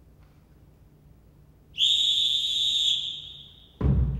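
A single long whistle blast, one steady high pitch, starts suddenly a little before halfway and fades out after about two seconds. A deep drum hit lands just before the end as music begins.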